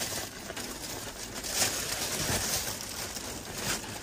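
Plastic packaging bag rustling and crinkling irregularly as a new quilt is pulled open from it by hand.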